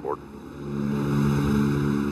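Boeing B-29 Superfortress's four Wright R-3350 radial piston engines running in a steady, deep drone that swells over the first second and then holds.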